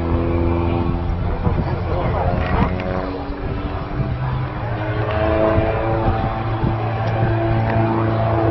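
Engine of a small airplane droning overhead, its pitch shifting up and down several times as it maneuvers.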